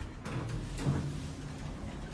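Hydraulic elevator car door sliding open, with a low steady hum from the elevator machinery.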